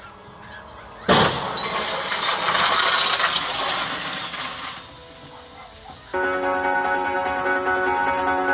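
Two cars colliding: a sudden loud crash about a second in, followed by a rush of scraping noise that dies away over about three and a half seconds. Near the end comes a steady sound of several held pitches, lasting about two and a half seconds.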